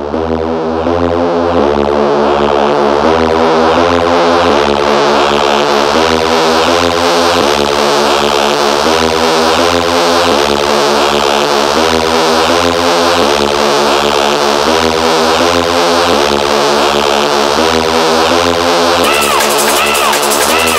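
Hard techno (Schranz) DJ mix: a repeating synthesizer chord riff pulsing about twice a second over a steady low beat, building slightly in loudness over the first couple of seconds. Near the end, higher clicking percussion and short pitch glides come in.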